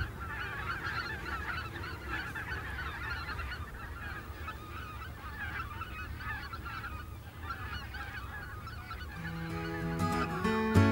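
A flock of geese calling: a dense, continuous chorus of many overlapping honks. Guitar music comes in near the end.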